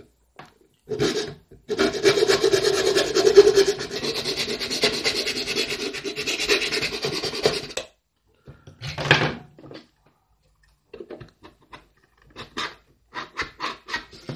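Hand file rasping the edge of a rectangular hole in an ABS plastic project box, worked through a 3D-printed jig, in a run of quick strokes lasting about six seconds before it stops. A few short knocks and clicks follow near the end.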